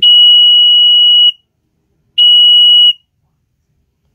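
Piezo buzzer on a water level indicator board sounding a loud, steady, high-pitched tone in two beeps, a long one of over a second and then a shorter one. It is the full-level alarm, set off by the sensor strip being fully dipped in water.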